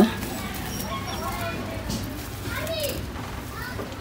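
Faint children's voices and chatter in the background, with no nearer sound standing out.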